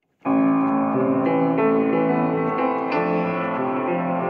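Piano-led music that begins abruptly out of silence, with sustained chords changing every second or so.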